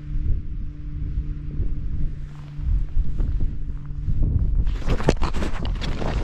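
Wind buffeting the microphone while a hiker runs down rocky ground, footsteps scuffing and knocking on stone. From about two thirds of the way in the steps turn into a quick jumble of scrapes and knocks as he slips on the wet rocks.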